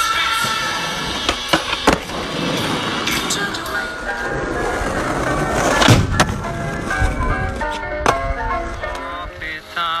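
Skateboard wheels rolling on asphalt, with several sharp clacks of the board, the loudest about six seconds in, over background music.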